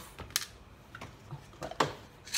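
Light clicks and taps of plastic supplement bottles being handled, with a sharp click about a third of a second in and another near the end.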